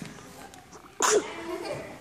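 A sudden loud vocal burst, such as a sneeze, about a second in, over the low murmur of a children's audience in a hall.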